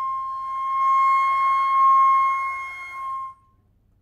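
Concert flute holding one long high note that swells and then dies away about three seconds in.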